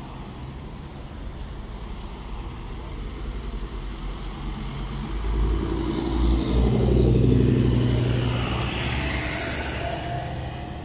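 Road traffic passing on a highway: a pickup truck and a box truck drive by close. The engine and tyre noise swells to its loudest about seven seconds in, then fades.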